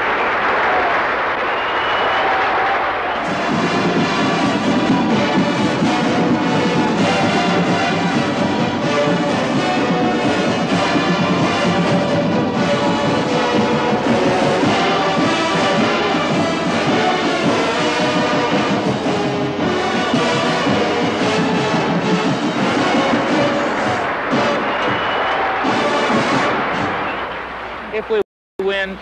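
A drum and bugle corps performing: the bugle line plays a sustained, harmonised brass passage, and the drum line comes in underneath about three seconds in. The music eases off near the end.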